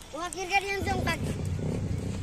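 A child's high-pitched voice calls out briefly, then a low rumble sets in about a second in and carries on.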